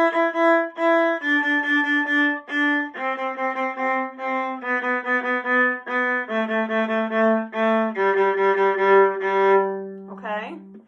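Violin playing the G major scale downward, each note bowed several times in short strokes, stepping down to a long low G on the open G string near the end.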